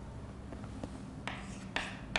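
Chalk writing on a chalkboard: two short strokes of chalk, the first about a second and a quarter in, after a couple of faint ticks.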